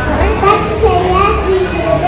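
Young children's voices reciting short lines into a microphone, amplified over a PA.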